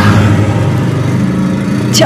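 Motorcycle engine running steadily.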